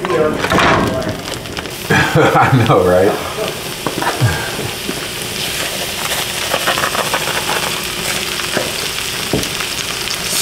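A raw block of ground beef sizzling in hot oil in a pan: a steady hiss that thickens about halfway through. Near the start there is crinkling from its plastic wrapper being peeled off.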